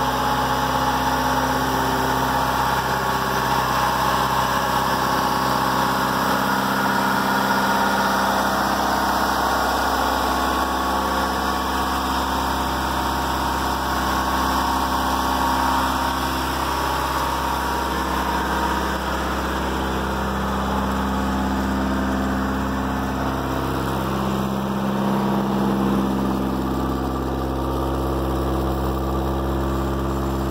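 A vehicle engine idling steadily, an even low running note with no revving.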